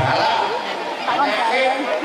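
A man speaking into a microphone, over the chatter of a crowd.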